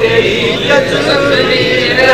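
A man chanting a line of devotional Urdu verse, drawing out long held notes that waver slightly.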